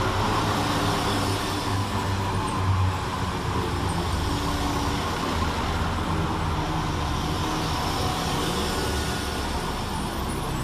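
Two coupled Class 172 Turbostar diesel multiple units moving along the platform, their underfloor diesel engines running steadily over wheel and rail noise.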